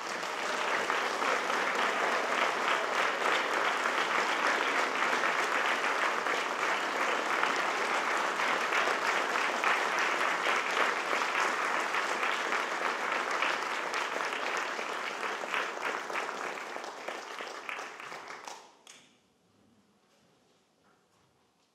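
Audience applauding: dense, steady clapping that tails off and stops near the end.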